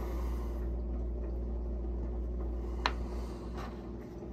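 Faint handling and mouth sounds as a pinch of moist snuff is worked into the upper lip, over a steady low hum. One sharp click about three seconds in.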